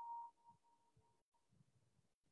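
Near silence, with a faint steady tone at the start that fades away within about a second.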